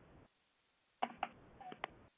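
Background noise from a phone caller's unmuted line on a conference call. After a stretch of dead silence, sharp clicks and knocks come through faintly from about a second in.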